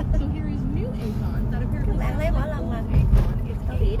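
Steady low road rumble inside a moving car's cabin, with voices talking and laughing over it.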